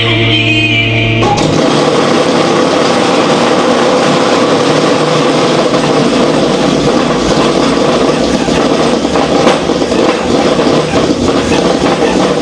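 Mock electric chair's electrocution sound effect: a steady drone, then a loud, harsh electrical buzzing and crackling that cuts in suddenly about a second in and keeps going.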